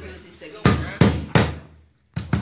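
Three sharp knocks or hand-struck beats, about a third of a second apart, in a rough rhythm. The sound cuts out briefly near the end.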